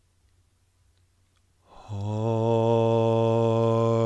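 Near silence, then a little before halfway a man's voice begins intoning "harmonia" as one long chant tone, held steady on a single low pitch.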